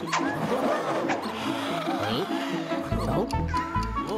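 Cartoon background music with characters' wordless squeaky vocalizations and giggles; about three seconds in, a deep pulsing bass line joins the music.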